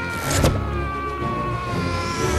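Animated film soundtrack from a fight scene: held music tones that slowly sink in pitch, a sharp impact about half a second in, and a rising whoosh starting near the end.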